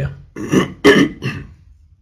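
A man's voice making three short non-word vocal sounds in quick succession, about a quarter-second apart, like throat clearing or a brief chuckle.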